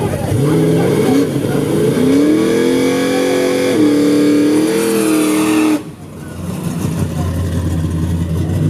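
Engine of a small Chevy S-10 drag pickup revving hard. The pitch climbs over about two seconds, holds high, steps near the middle and cuts off abruptly. A lower, steady engine rumble follows.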